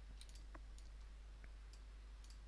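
A handful of faint, short computer mouse clicks over a steady low hum.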